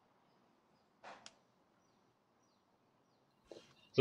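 Quiet room tone with a short rustle about a second in and a brief scuff near the end, from hands handling the opened plastic toy body and picking up its remote control.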